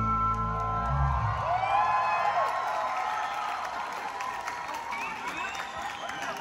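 A live band's final chord rings out and stops about a second in, then a large concert audience cheers, whoops and applauds, with scattered whistles.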